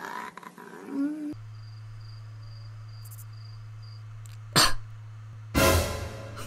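A steady low electrical hum with a faint high beep repeating about twice a second, broken near the end by two short, loud bursts of noise.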